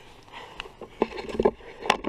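Handling noise close to the microphone: scattered soft knocks, scrapes and rustles as the camera is handled, with a sharp click near the end.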